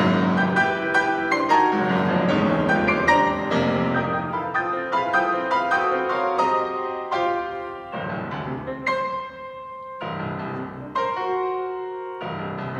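Steinway Model D concert grand piano played solo in fast, accented chords and runs. About eight seconds in it turns quieter and sparser, with a held chord, then picks up again near the end.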